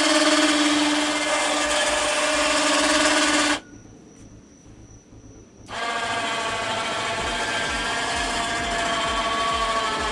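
Electric winch motor running to move a bed platform on steel cables: a steady whine for about three and a half seconds, a stop of about two seconds, then a second, slightly quieter run.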